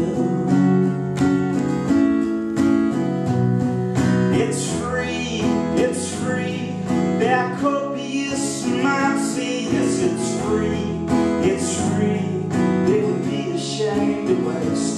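Two acoustic guitars playing an instrumental break, one strumming chords while the other picks a lead line high on the neck.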